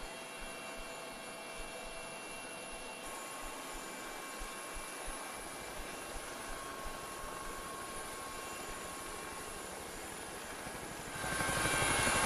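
Helicopter running steadily, rotor and turbine noise with a whine of steady tones and a faint regular low thud from the blades; it grows louder about eleven seconds in.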